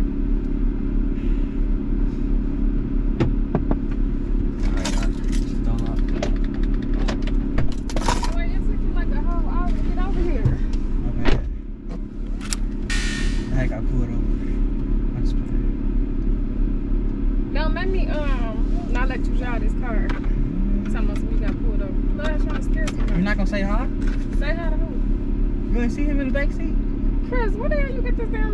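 Steady low hum of a parked car's engine idling, heard inside the cabin. About eleven seconds in there is a sharp knock and a brief rustle as someone gets into the car, and low voices talk in the second half.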